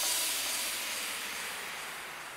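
Hissing noise fading steadily away: the decaying tail of an electronic dance mix after its final hit.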